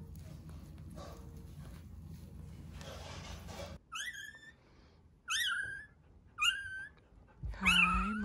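Newborn golden retriever puppy crying three times, short high-pitched squeals that rise and then fall, about a second apart. They follow a few seconds of faint, steady low hum.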